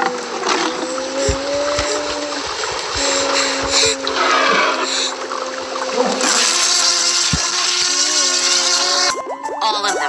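Film soundtrack: held low music notes over a steady hiss, which gets heavier about six seconds in where rain is falling on a car window, with a few low thuds.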